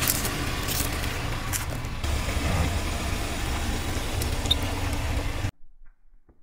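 Car engine running at low speed as the tyre rolls onto a foam toy glider, with a few sharp crackles in the first two seconds. The sound cuts off suddenly near the end.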